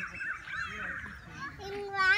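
Young children's voices chattering and calling out in a playground, with one high child's voice getting louder near the end.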